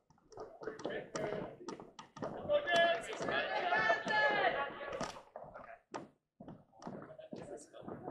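Indistinct chatter of several people, loudest for a few seconds in the middle, over scattered sharp taps of dance-shoe heels on a wooden floor.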